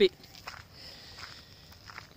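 Faint footsteps of a person walking on an unpaved path, a few soft steps between words, over a faint steady high hiss.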